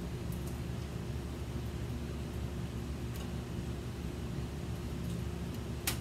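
Steady low machine-like hum with several steady pitched tones under a faint hiss. A few faint clicks, and one short sharp sound just before the end.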